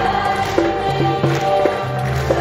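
A large qanun ensemble plucking a melody together while a choir sings, over a steady bass and percussion accompaniment.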